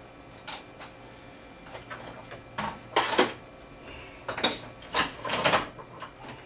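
Short clatters and scrapes of tools and metal parts being handled on a workbench: one about half a second in, a cluster around three seconds in, and several more near the end.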